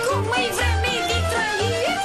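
Romanian folk dance music from a live band: a lead melody full of quick up-and-down pitch slides over a bass note struck about twice a second.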